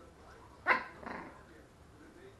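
West Highland White Terrier puppy giving one short, sharp bark a little under a second in, with a fainter second sound just after it.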